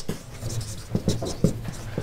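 Marker pen writing on a whiteboard: a quick run of short, irregular strokes as a word is written out.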